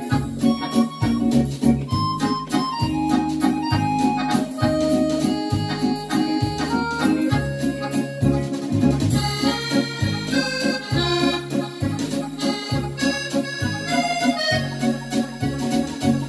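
French musette-style tune played on a Yamaha PSR-S775 arranger keyboard, an accordion-like voice carrying the melody over a regularly repeating bass accompaniment.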